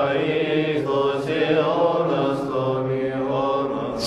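Several voices chanting in slow, sustained notes, a religious chant with long held tones.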